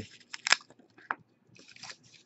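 Plastic trading-card sleeves and cardboard being handled: a few sharp clicks, then a brief crinkling rustle near the end.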